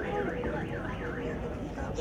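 An electronic alarm warbling up and down rapidly, about four rises and falls a second, breaking off near the end.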